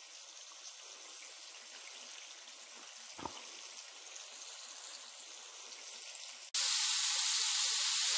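Floured chicken tenderloins frying in hot oil in a skillet: a steady sizzle, faint at first, then suddenly much louder about six and a half seconds in. A small knock about three seconds in.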